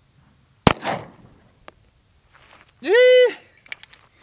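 A single 9mm pistol shot, a 115-grain full metal jacket round, about two-thirds of a second in, with a short echo trailing after it.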